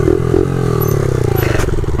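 Honda Monkey mini bike with a 72cc single-cylinder engine running while ridden, its pitch slowly falling as the bike slows down, with a brief clatter about a second and a half in.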